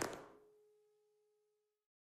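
The tail of a loud sound dies away within the first third of a second, then near silence. A very faint steady tone lingers and stops shortly before the end.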